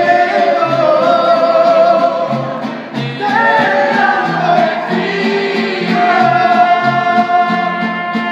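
Mariachi band playing live with a male lead singer holding long notes over violins, guitars and a guitarrón. The guitarrón plucks bass notes on a steady beat, and the singer breaks between phrases about three seconds in.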